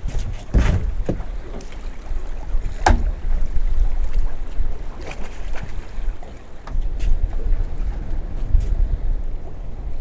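Wind blowing across the microphone aboard a small open boat at sea, with a few sharp knocks from handling in the boat, the loudest about three seconds in.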